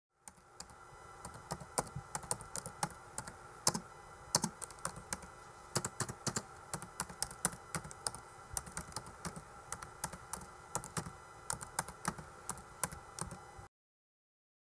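Typing on a laptop keyboard: quick, irregular keystrokes, several a second, over a faint steady hum. The typing cuts off suddenly near the end.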